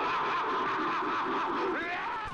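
A person laughing, a run of quick 'ha' syllables that rise and fall in pitch without a break.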